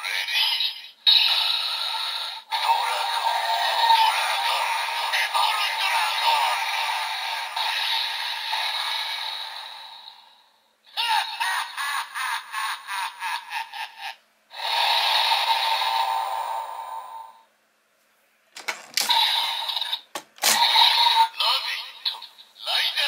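DX Evol Driver toy belt playing its transformation sounds through its small built-in speaker: electronic voice callouts and music, thin and tinny, in long stretches with short pauses and a rapidly pulsing passage about 11 seconds in. Near the end, short plastic clicks as an Evol Bottle is pulled out and swapped in the driver.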